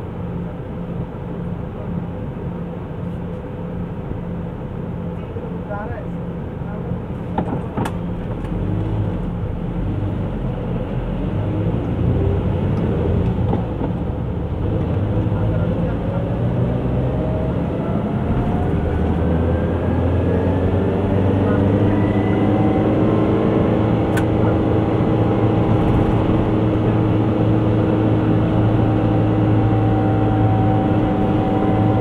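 A car's engine and road noise, running steadily at first. About halfway through the engine note rises and gets louder as the car pulls away and accelerates, then holds at a higher, steady pitch. There are a couple of brief clicks.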